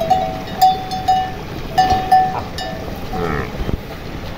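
Metal neck bell on a feeding water buffalo clanking irregularly as the animal moves its head, a dozen or so short rings.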